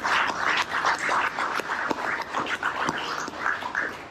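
Applause: many hands clapping in an irregular patter, thinning out near the end.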